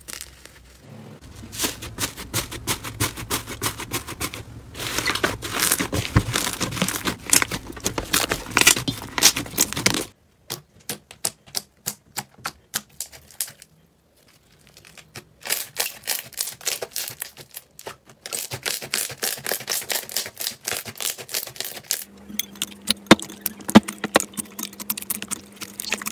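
Slime worked by hand, in several short clips. It starts with dense crackling and crunching as a crunchy slime is squeezed for about ten seconds. After that come sparser pops and clicks from glossy slimes being poked and pressed, with a brief quiet gap partway through.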